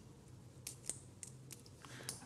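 Faint clicks of an ECG lead's spring clip being opened and clipped onto an adhesive electrode tab on the wrist: a handful of short, sharp snaps in the second half.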